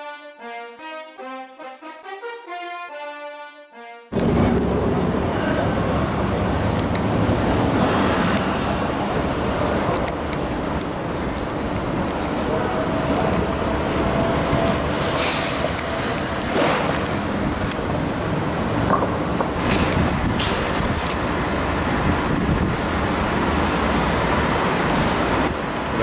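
Brass intro music for about four seconds, then a sudden change to loud, steady outdoor street noise with traffic rumble as a white Maybach 62 S limousine rolls slowly past and pulls in.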